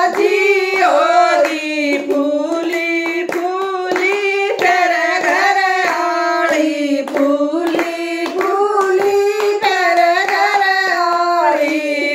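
Women singing a devotional bhajan together, keeping time with a steady beat of hand claps, roughly three a second.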